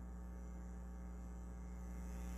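Steady low electrical mains hum, with no other sound over it.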